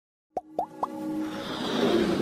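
Intro sting of a motion-graphics logo animation: three quick pops, each rising in pitch, within the first second, then music swelling up.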